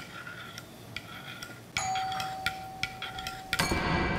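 A metal spoon clinking repeatedly against a ceramic mug, a dozen or so light clicks. A steady held tone comes in about halfway, and a louder sound starts just before the end.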